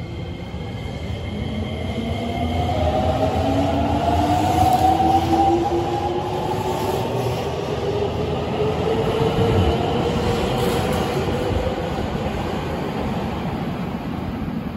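Nagoya Municipal Subway N3000-series train accelerating away from an underground platform. Its traction motor whine climbs steadily in pitch over about ten seconds, over the rumble of the wheels on the rails.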